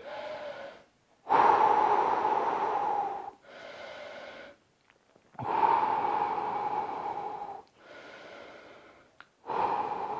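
A man breathing slowly and deeply, recovering after a set of high knees. There are about three long, loud breaths of some two seconds each, and each is followed by a shorter, quieter one.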